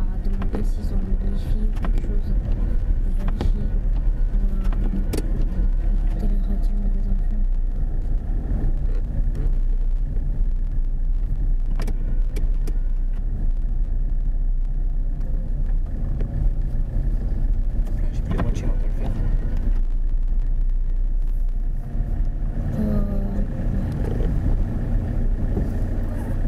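Cabin noise of a car driving slowly on a snow-covered road: a steady low engine and tyre rumble, with scattered sharp clicks.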